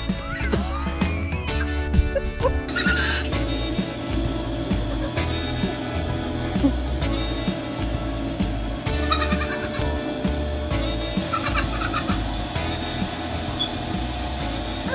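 Background music with a steady beat, over which a goat bleats in short bursts: once about three seconds in and twice more later.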